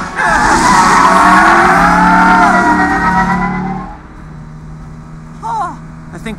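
Car tyres squealing in a long skid for about four seconds: several wavering, gliding high tones at once over a low steady tone. The squeal then dies away to a quieter low hum.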